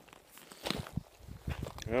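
Faint, irregular scuffs and small knocks that are never steady, then a man's voice starts speaking at the very end.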